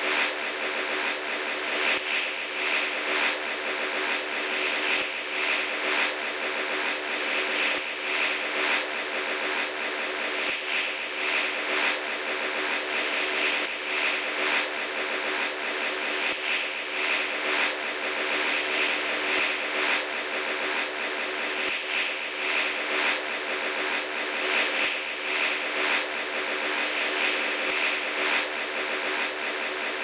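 Ship's whistle of the ocean liner SS Oriente (later the troopship Thomas H. Barry), sounding one long, unbroken blast that holds several steady tones over a rough, hissing edge.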